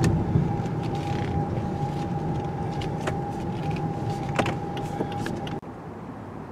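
Lexus ES 300h hybrid sedan driving slowly, heard from inside the cabin: a steady hum of road noise under a thin, steady whine, with a few faint clicks. The sound drops away abruptly near the end.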